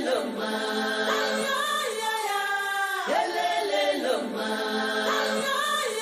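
A choir of voices singing a chant-like phrase that repeats about every three seconds, the voices sliding down in pitch at the start of each phrase.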